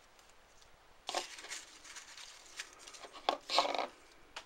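Folded paper slips rustling and crinkling as they are handled, in two bursts: one about a second in and a louder one near the end.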